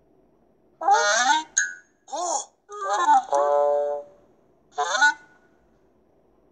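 Cartoon sound effects from an animated children's story app: a string of short honking, animal-like calls that glide up and down, with a brief ding about one and a half seconds in and one longer held call in the middle.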